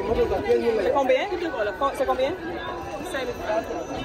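Voices talking at close range, going back and forth over a price, with market chatter around them.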